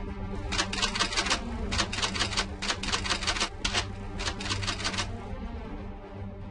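Typewriter-style clicking sound effect in four quick runs of keystrokes, over a steady low background music bed.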